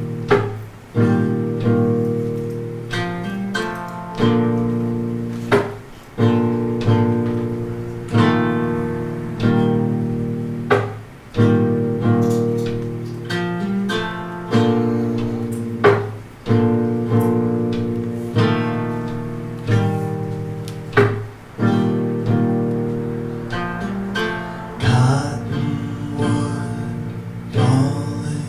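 Acoustic guitar playing an instrumental passage: chords struck about once a second, each ringing out and fading before the next.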